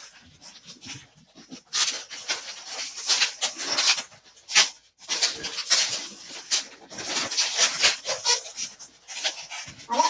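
A green 260 latex modelling balloon squeaks and rubs against itself and the red balloons as it is twisted into loops. The sound comes as a quick run of short squeaks and rubs, starting after a quieter second or two and pausing briefly about halfway through.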